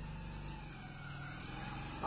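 Steady low hum of a running machine, even in level throughout.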